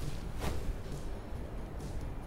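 Quiet outdoor background with a low, even rumble and one faint tick about half a second in; no distinct event.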